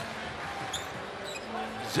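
Arena crowd murmur from a televised basketball game, with a basketball being dribbled on the hardwood court.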